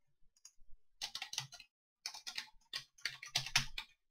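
Computer keyboard typing in short bursts of rapid key clicks, with the densest and loudest run in the last second or so.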